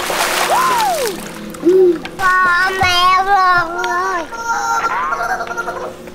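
Water splashing as a bucket of water is tipped over a toddler at the start, under edited-in background music. Swooping sound effects that rise and fall in pitch follow, then a wavering pitched tone from about two to four seconds in.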